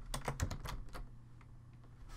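Typing on a computer keyboard: a quick run of about eight keystrokes, stopping about a second in.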